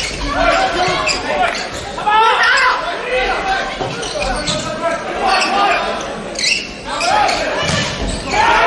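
Volleyball being struck again and again in a rally, sharp hits that echo in a large indoor hall, under shouting voices from players and crowd. A low thump comes near the end.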